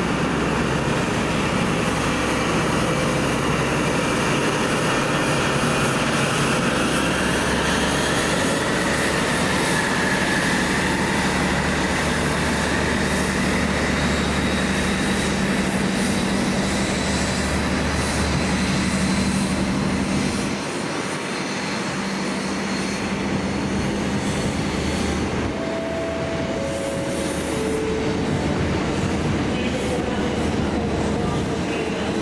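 Class 43 HST diesel power car working under power as the train moves off, with the coaches running past on the rails. The engine's steady drone drops away about two-thirds of the way through, leaving the sound of the coaches rolling by.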